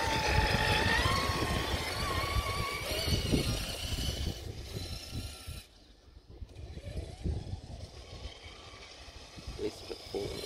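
Motor of a Traxxas radio-controlled monster truck whining as it drives over grass, the pitch rising over the first few seconds. The sound then fades as the truck moves off and grows again near the end as it comes back.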